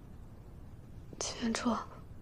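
A woman says a brief two-syllable phrase about a second in. Before it there is only quiet room tone.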